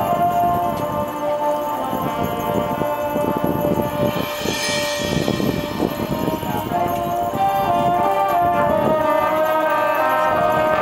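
Marching show band playing through its show: brass holding sustained chords over drums, with a bright cymbal swell about halfway through.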